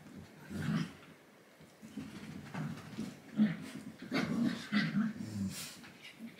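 Pet dogs making a series of short vocal sounds, several in a row with gaps between them, the loudest a little past halfway.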